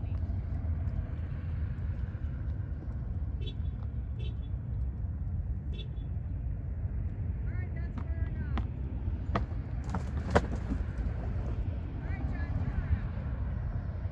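Steady low outdoor rumble, with a few sharp clicks between about eight and ten seconds in and faint, brief distant voice-like tones.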